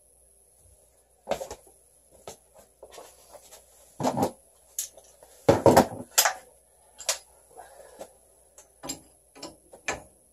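A string of irregular knocks and clattering thumps, the loudest a little after four and five and a half seconds in, over a faint steady high-pitched whine.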